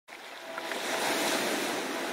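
Rushing-water whoosh of an intro sound effect, starting suddenly and swelling to a peak about a second in, with faint steady notes held underneath.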